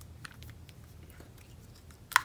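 Faint, scattered clicks and scraping of fingers working at the plastic back cover of an old Motorola mobile phone to pry it off.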